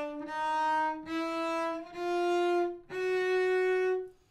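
Solo cello played slowly with separate bow strokes: about four sustained notes of roughly a second each, with short breaks between bows, stepping upward in pitch. It is a slow practice run through a passage with a left-hand extension and shift.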